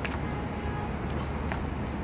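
Steady low outdoor rumble with two faint thuds about a second and a half apart: sneakers landing on paving tiles during jump lunges.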